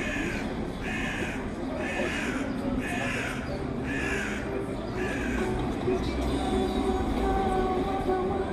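A bird calling six times, one call about every second, each call a harsh, slightly falling note. A low rumble sets in near the end.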